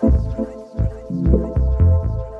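Deep tech / minimal house track: heavy low kick and bass thumps in a syncopated pattern under a held synth chord, with short percussion ticks.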